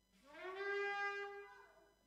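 Shofar blown once: a single horn note that slides up in pitch at the start, is held for about a second, then fades. It is the one blast that signals one completed round of the march.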